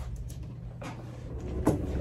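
Faint low rumble from the opening of a music video playing back, swelling slightly near the end, with a couple of soft clicks.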